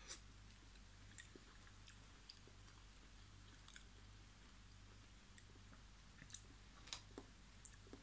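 Near silence with faint, scattered clicks: the mouth sounds of someone chewing a forkful of sauerkraut.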